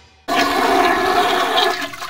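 A rush of flushing water starts suddenly about a quarter second in, holds steady for about a second and a half, then fades.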